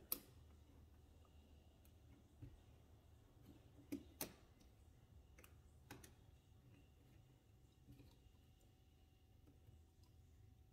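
Near silence broken by a handful of faint clicks, the two loudest close together about four seconds in, as fingers work thermostat wires into the plastic push-in terminals of a thermostat backplate.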